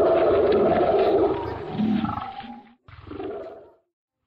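A large animal's roar, laid over the video as a sound effect: loud at first, fading, breaking off about three seconds in, then a shorter roar that stops abruptly just before the end.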